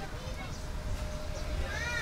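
Indistinct voices of several people talking, with a thin steady tone joining about a second in and a high rising-and-falling call near the end.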